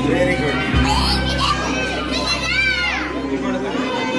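Children's voices, with high-pitched calls and chatter in a crowded room, over background music whose low notes stop right at the end.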